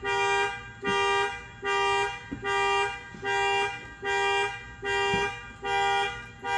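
Car alarm sounding the horn in a steady, even rhythm: a half-second honk a little more than once a second, over and over.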